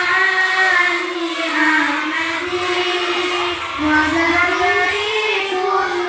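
A group of young girls singing together in unison, led by one singing into a microphone: a continuous melodic line with long held notes.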